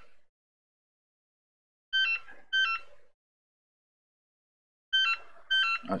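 Telephone ringing: short, high-pitched electronic rings that come in pairs, one pair about every three seconds.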